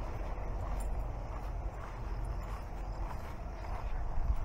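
Footsteps rustling through tall grass, over a steady low rumble.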